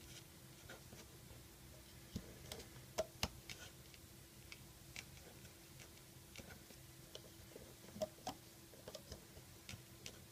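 Faint, scattered clicks and taps of rubber loom bands being handled and slipped onto the plastic pegs of a Rainbow Loom, a few irregular ticks over a low steady hum.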